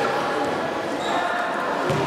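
Handball match in a sports hall: a steady hubbub of players' and spectators' voices, with a handball thudding once on the hard court floor near the end.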